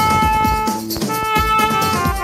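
Alto saxophone holding a long note that breaks off about halfway through, then going on with the melody, over a recorded backing track with a steady beat.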